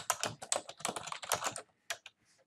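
Typing on a computer keyboard: a quick run of a dozen or so keystrokes as a short phrase is typed, stopping shortly before the end, then one more sharp keystroke.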